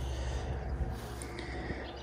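Quiet outdoor background between remarks: a low, steady rumble with no distinct sound event.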